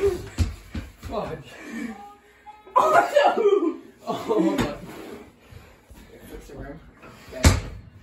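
Young men's voices calling out and laughing during a game, with a few sharp thumps of a basketball on a hard floor, the loudest near the end.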